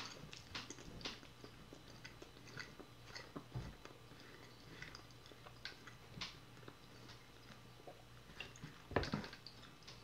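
Faint close-miked chewing of a soft honey bun and fried Spam sandwich: scattered small wet mouth clicks, with a louder cluster of mouth sounds near the end.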